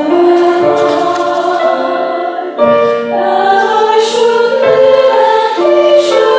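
A small mixed church choir sings to grand piano accompaniment. The sustained chords move about once a second, with brief sung 's' sounds near one second in and four seconds in.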